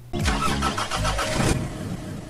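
Car engine starting, strongest for about a second and a half, then fading away.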